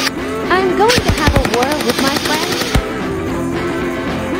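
Caissa MP7 electric gel blaster firing full-auto: a rapid run of shots starting about a second in and lasting nearly two seconds, over background music.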